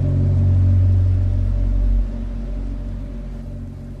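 Ambient electronic music: a deep, held bass drone with a low rumble and faint higher tones. It is strong for about two seconds, then drops and slowly fades.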